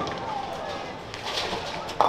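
Bowling alley din: background voices mixed with short clattering knocks.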